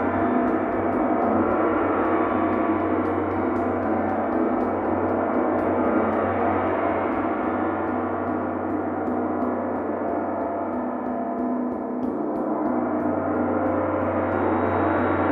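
Large hanging gong kept sounding with two soft felt mallets in light, repeated strokes, building a steady, dense wash of overlapping gong tones that dips a little near the end.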